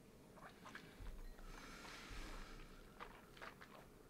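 Faint sipping and mouth sounds of whisky being tasted: a few small smacks and clicks, with a soft noisy breath about two seconds in.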